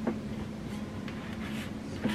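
Light handling sounds on a desktop: a soft tap right at the start, then faint rubbing and sliding as hands move over the desk and the aluminium tablet stand.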